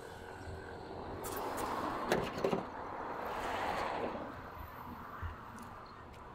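Tesla Model Y front trunk being unlatched and its lid raised: a couple of sharp clicks about two seconds in and a lighter one near the end, over a soft rush of noise that swells and fades.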